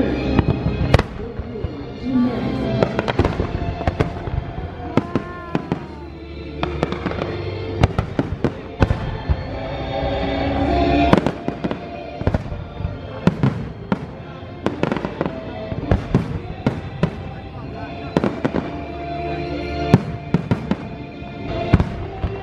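Aerial fireworks bursting overhead: a string of sharp bangs and cracks, coming in clusters, over show music played on loudspeakers.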